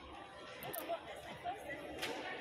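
Indistinct chatter of many people talking in a large airport terminal hall.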